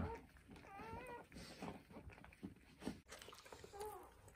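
Dog whimpering in a whelping box: one short, high-pitched whimper with a wavering pitch about a second in and a smaller one near the end, over faint licking as the golden doodle mother cleans herself while giving birth.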